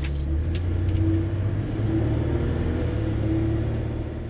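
Converted ambulance camper van's engine and road rumble heard from inside the cabin as it drives off: a steady low rumble.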